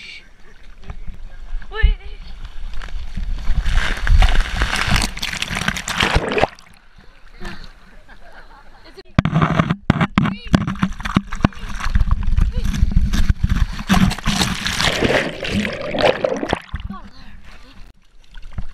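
Water rushing and sloshing close to a handheld camera during a ride down a water slide, in two long noisy stretches with a quieter lull between them. A brief vocal sound comes near the start.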